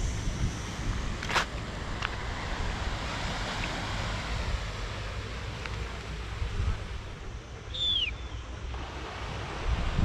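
Wind buffeting the microphone, a low rumble under a steady hiss of wind and distant surf. A sharp click comes about a second in, and a short falling chirp near eight seconds.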